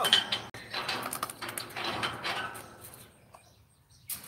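Steel-framed chain-link enclosure gate being slid shut to lock a tiger in, rattling and clanking for about two and a half seconds before it goes quiet.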